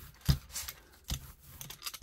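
A hand brayer being rolled and handled on an inked printing plate: a few short, sharp clicks and knocks, the loudest about a third of a second in.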